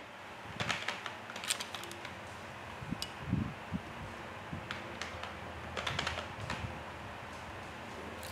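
Faint, scattered light clicks and taps with soft rustling from hands handling watercolour painting things on a paper-covered craft table, in little clusters about a second in and again past the middle.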